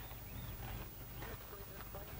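Quiet outdoor background with faint, distant voices of people talking.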